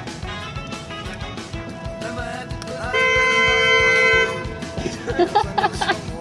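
A car horn sounds once, a steady two-tone blast held for just over a second about three seconds in, over background rock music. Laughter breaks out near the end.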